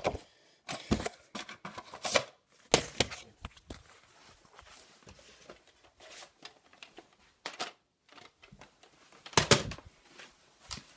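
VHS tapes and their plastic cases being handled: irregular clacks and knocks with rustling between them, the loudest cluster of clatter near the end.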